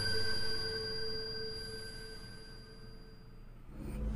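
A sustained ringing tone made of several steady pitches, slowly fading away over about three seconds.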